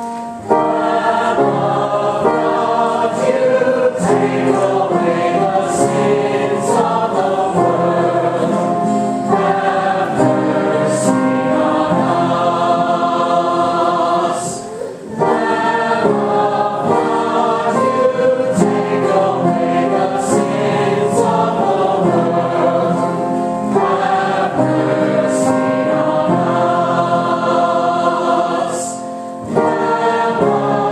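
Church choir singing a hymn in harmony, with brief breaks between phrases about halfway through and again near the end.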